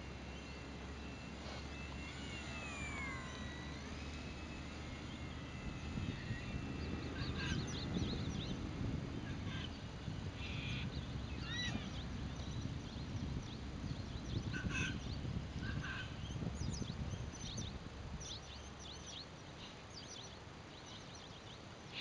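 The RC Extra 300S's motor and propeller whining in flight, the pitch dipping and rising with the throttle over the first few seconds, with wind rumble on the microphone. Then birds calling repeatedly in short chirps, and a sudden thump right at the end.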